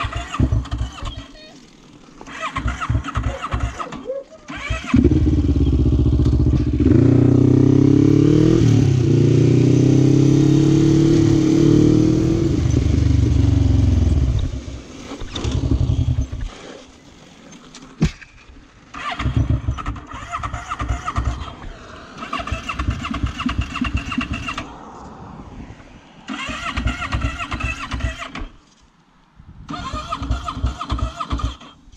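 A sport quad's engine being cranked in short bursts. It catches about five seconds in, runs and revs for about nine seconds, then dies. Several more cranking attempts follow without it restarting: the sign of a fault that the rider suspects may be fuel, battery or fuel pump.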